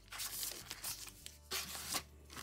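Rustling and rubbing of plastic binders, planners and bag fabric being handled and shifted inside a fabric tote bag, in two bursts: one in the first second and another near the end.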